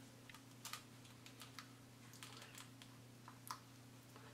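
Near silence with faint, scattered small clicks and crackles of a used plastic coffee pod being handled and picked open, over a low steady hum.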